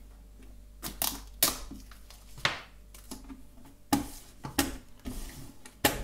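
Adhesive tape being laid and pressed down over the slotted bass-side cover of a chromatic button accordion: a string of sharp clicks and taps on the hard cover, with a short rustle of tape near the end.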